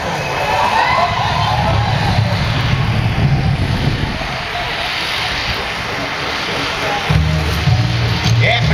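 Noise of a large outdoor crowd mixed with the show's soundtrack over loudspeakers. About seven seconds in, music with a heavy repeating bass beat starts.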